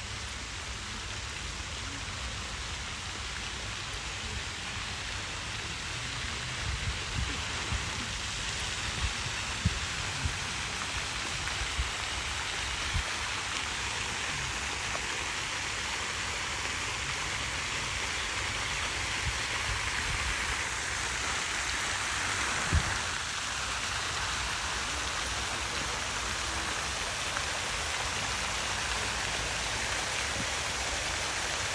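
Rows of fountain jets splashing into an ornamental pool: a steady hiss of falling water that grows a little louder past the middle. A few low thumps are heard along the way.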